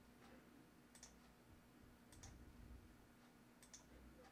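Near silence with a few faint computer mouse clicks, two of them in quick succession near the end, over a low steady hum.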